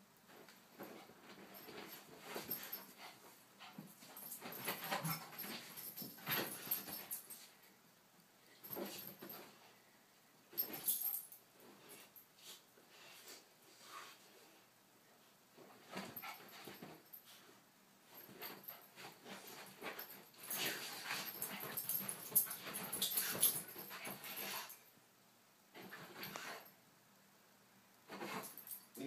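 Dogs play-fighting, the big dog mouthing the small dog's head without biting: irregular bursts of dog sounds and scuffling in clusters, with short lulls between them.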